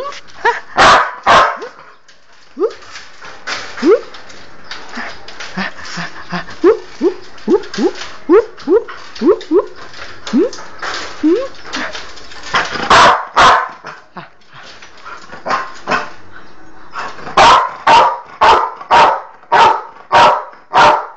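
Dog barking again and again. A run of short, rising yelps comes in the middle, and loud barks come about two a second near the end.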